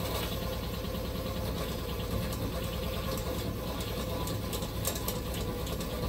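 Hoverboard hub motor spun unloaded by its tyre against a pedal-driven flywheel at about 60 rpm at the pedals, generating about 31 volts. It runs with a steady mechanical whir and a fast, fine rattle, making "very funny noises" from a motor that is on the way out.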